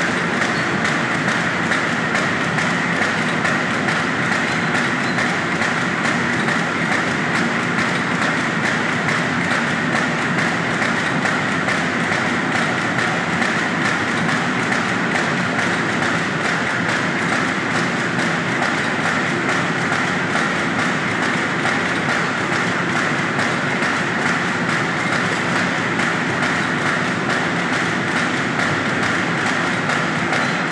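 BAGMAC automatic paper bag making machine running at production speed: a steady, fast, even mechanical clatter from its forming and cutting mechanism.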